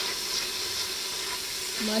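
Onions, spices and tomato pieces frying in oil in a nonstick pot, a steady sizzle as a spatula stirs them while the tomatoes soften.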